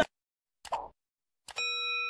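Subscribe-button animation sound effects: a short pop about two-thirds of a second in, then a click and a bell chime ringing for under a second near the end.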